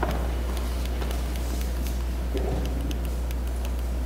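Steady low hum with faint room noise, unchanging throughout, with a few faint ticks.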